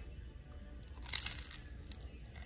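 A bite into a pizza slice's crisp crust: one short crunch about a second in, then a few small crackles near the end.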